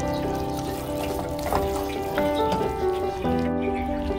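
Background music with sustained, held notes; the chord changes a little over three seconds in.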